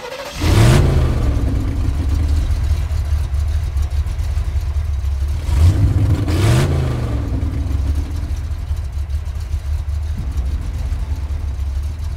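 A car engine revs up right after starting, then settles into a low, steady idle. It revs again about six seconds in, its pitch rising and then falling back.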